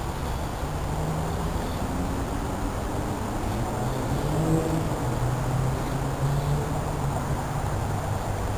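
Distant engine rumbling steadily, its low hum wavering a little in pitch.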